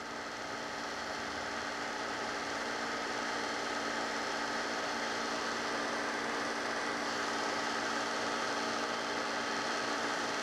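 Steady electrical hum with hiss, several constant tones under a noise bed. It grows slightly louder over the first few seconds, then holds level.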